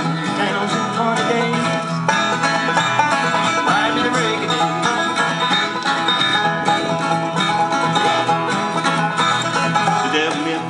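Banjo and acoustic guitar playing a bluegrass tune together in an instrumental passage, with the banjo picking busily over the guitar's strummed rhythm.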